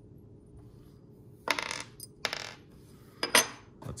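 Knife handle parts being handled and set down on a wooden table: a couple of short scraping rustles, then a sharp metallic click, the loudest sound, a little after three seconds in.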